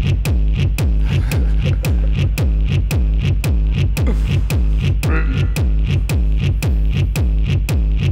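Computer-generated electronic music driven by a heavy 'dirty kick' bass drum, each kick dropping quickly in pitch, repeating on a fast, even beat. A short higher electronic blip comes about five seconds in.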